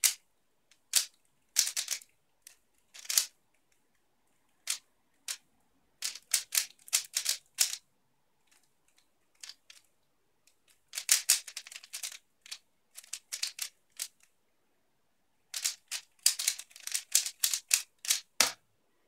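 3x3 speed cube being turned by hand: plastic layers clacking in quick runs of turns, with short pauses between the runs.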